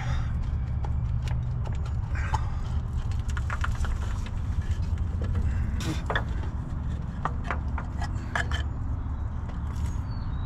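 Irregular clicks and knocks of a small plastic cover being worked loose by hand from its mounting beside a Land Rover V8's exhaust manifold, over a steady low rumble.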